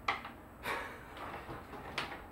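A few light knocks and a brief scrape of hands handling things on a kitchen cutting board. The loudest is a short swish about two-thirds of a second in.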